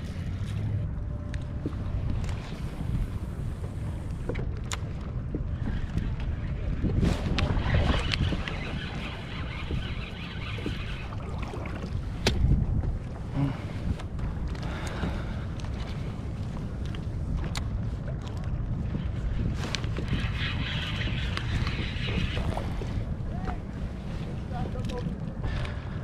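Wind buffeting an action camera's microphone on a kayak at sea, with water lapping at the hull and occasional sharp clicks. Twice, about a third of the way in and again near the end, a brighter hissing texture rises over the rumble for a few seconds.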